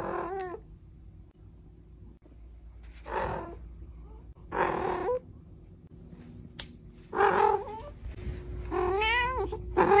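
Domestic cat meowing repeatedly, about six separate calls, the later ones louder and longer with a wavering pitch.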